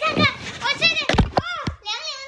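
A woman talking excitedly in a high voice, with a low thump about a second in.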